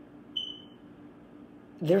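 A single short, high-pitched tone with a sharp onset about a third of a second in, fading quickly, over a faint steady hum in a quiet room; a woman's voice starts near the end.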